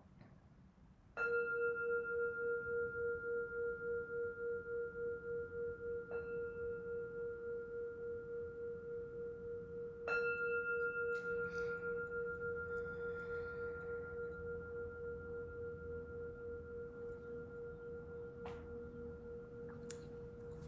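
A meditation bowl bell struck about a second in and again about ten seconds in, each stroke ringing on with a wavering hum and slowly dying away, with a lighter tap in between.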